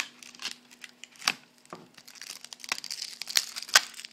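Plastic shrink wrap being torn and peeled off a phone's retail box: irregular crinkling and rustling broken by several sharp snaps, the loudest near the end.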